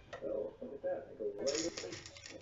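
A voice speaking quietly, then, about a second and a half in, an abrupt burst of hissing, crackling noise.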